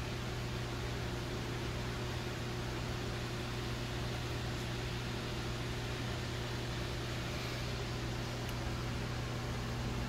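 Steady room machinery noise: an even fan-like whir over a constant low hum.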